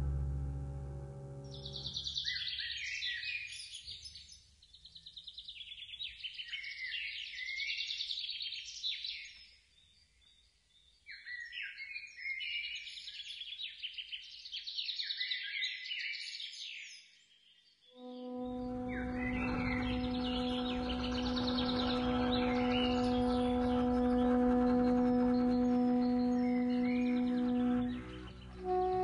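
Improvised music: quick high chirping, twittering sounds in clusters with short gaps, then about eighteen seconds in a single long steady held tone.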